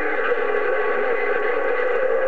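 A President HR2510 radio's speaker giving out a steady rush of noise with several steady whining tones laid over it: a received signal with no voice on it.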